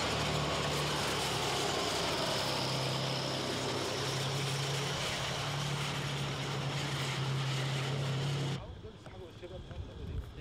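A heavy vehicle engine runs loud and close, a steady low drone over a wash of noise, dropping slightly in pitch about two and a half seconds in. It cuts off suddenly about a second and a half before the end.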